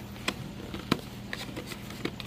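A few light clicks and taps from hands handling a bag and packing in a styrofoam-lined shipping box, the sharpest about a second in, over a steady low hum.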